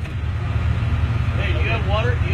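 A vehicle engine idling: a steady low rumble that fades in, with people's voices starting over it near the end.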